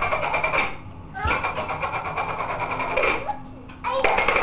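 A young child's short vocal sounds over a steady, high, rapidly pulsing electronic tone that stops and starts.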